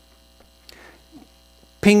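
Steady low electrical mains hum in a pause between words, with a few faint clicks in the first second; a man's voice starts near the end.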